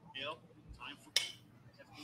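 Faint speech, with one sharp click a little over a second in.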